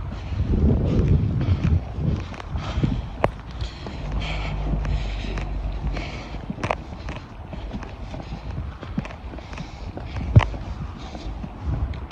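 Footsteps at a walking pace with the rub and rustle of a handheld phone against the microphone, and a sharp click near the end.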